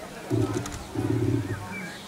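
A dog growling in two low rumbles of about half a second each.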